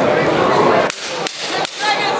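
A towel being flapped hard, giving about three sharp snaps less than half a second apart over the hall's background noise.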